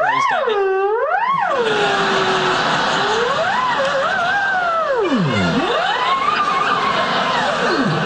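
A theremin playing one gliding tone that slides continuously in pitch: two quick swoops up and down at the start, then slower wandering slides with a deep downward plunge past the middle and another at the end.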